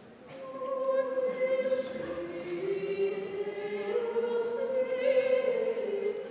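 A small mixed vocal ensemble of five women and one man singing unaccompanied. The voices come in just after the start and hold long notes, moving together from chord to chord.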